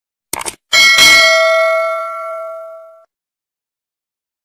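A short click, then a single bright bell ding that rings and fades out over about two seconds. These are the stock sound effects of a subscribe-button animation: the cursor clicking and the notification bell.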